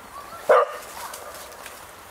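A single short dog bark about half a second in.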